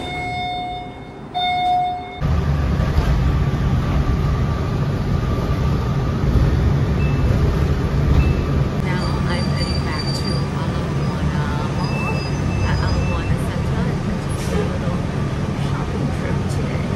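An elevator chime sounds twice, two steady tones of the same pitch. Then, after about two seconds, the steady low rumble of a city bus on the move, heard from inside the cabin, with a few brief high whines.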